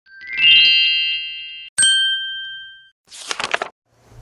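Title-card sound effects. First comes a bright chime that swells and cuts off abruptly, then a single bell-like ding that rings out for about a second. Near the end there is a short burst of high, rattly sparkle noise.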